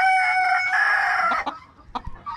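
A rooster crowing: one long crow that ends about a second and a half in.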